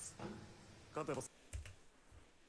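A couple of quick keyboard clicks about one and a half seconds in, pausing playback, after a short snatch of dialogue from the episode.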